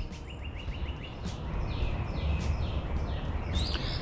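Birds chirping outdoors, with a series of short falling notes about every half second, over a steady low rumble of background noise.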